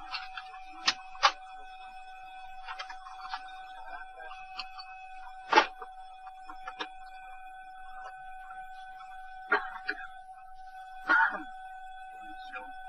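Cockpit voice recorder audio from a DC-9 flight deck before engine start: a steady electrical tone with overtones, broken by scattered sharp clicks and knocks of cockpit switches and handling. The loudest click comes about halfway through, and a short cluster of clicks comes near the end.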